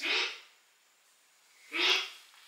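Two short breaths from a person, one at the very start and one near the end, with silence between.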